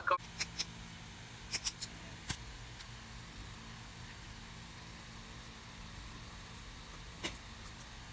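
A low steady hum with a handful of sharp clicks, several in the first three seconds and one more near the end.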